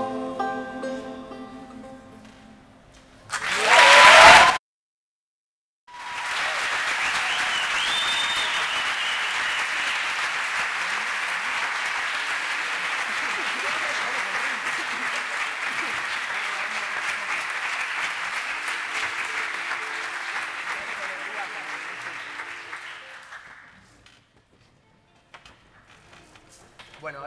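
A band's last sung notes fade out, then a short loud burst and a second of dead silence, then an audience applauding for about seventeen seconds with a whistle a couple of seconds in. The applause dies away near the end.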